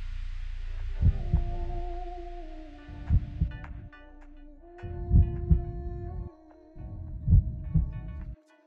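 Film-score sound design: a slow heartbeat-like pulse of paired low thumps, one pair about every two seconds, under sustained drone tones that shift in pitch.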